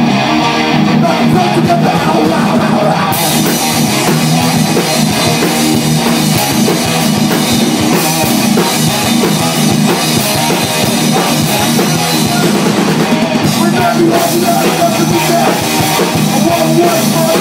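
Hardcore punk band playing live through amplifiers: distorted electric guitars and bass in an instrumental passage, with the drum kit and crashing cymbals joining in about three seconds in, recorded loud on a phone microphone.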